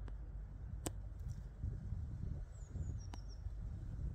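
Wind rumbling on the microphone, with a few faint, high, falling bird chirps a little past the middle and two sharp clicks.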